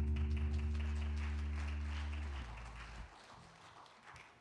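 The worship band's final chord ringing out and fading, dying away about three seconds in, with a faint patter of noise above it.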